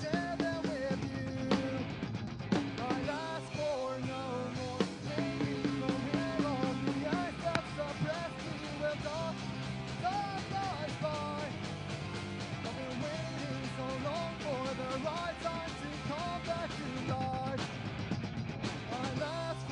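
Punk rock band playing live: drum kit and electric guitars, with a sung vocal line.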